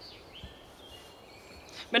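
Quiet outdoor ambience with a few faint, distant bird calls, before a voice starts again at the very end.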